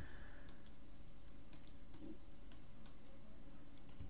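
Computer mouse clicking about half a dozen times, light, sharp clicks spaced irregularly, over a faint steady hum.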